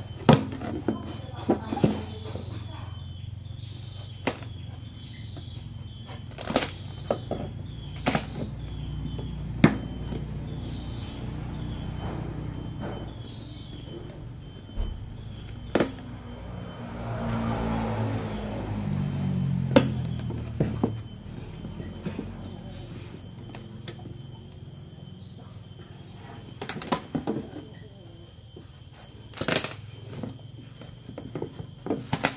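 A knife blade scraping and slicing along packing tape and cardboard on a long box, with frequent sharp knocks and taps as the box is handled. A louder low rumbling swells up about two-thirds of the way through and fades.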